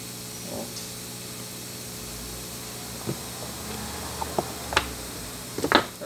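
Hot air rework station running with a steady hum and airy hiss, with a few light clicks in the second half as metal tweezers work at a component on the circuit board.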